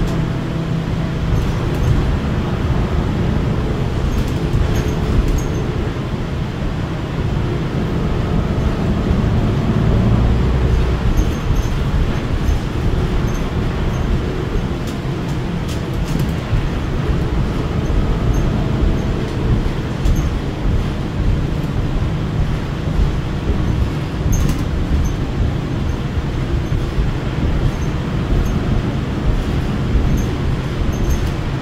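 Cabin noise inside a New Flyer XDE60 diesel-electric hybrid articulated bus under way: a steady low drivetrain and road rumble that swells for a few seconds about a third of the way in, with occasional faint clicks and rattles from the fittings.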